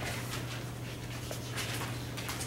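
Dry-erase marker writing on a whiteboard, faint short strokes over a steady low hum.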